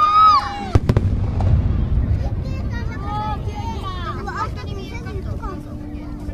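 Aerial firework shell bursting with a sharp bang about a second in, followed by a low rumble that fades over the next few seconds. Spectators' voices call out just before the bang and again a couple of seconds after it.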